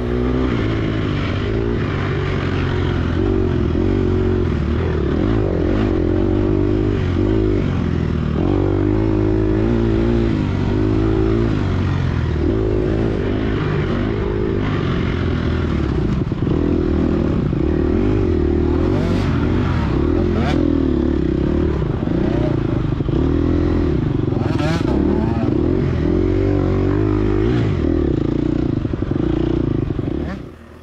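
Gas Gas EX250F dirt bike's 250cc four-stroke single-cylinder engine at race pace, its pitch rising and falling continuously with throttle and gear changes through the trail. A few short clatters about two-thirds of the way in.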